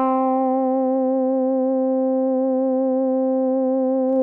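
Moogerfooger MF-107 FreqBox oscillator through an MF-101 low-pass filter, played as a monophonic analog synth: one steady held note, rich in harmonics. Its pitch has a slight regular vibrato from an LFO routed to the oscillator's frequency control voltage.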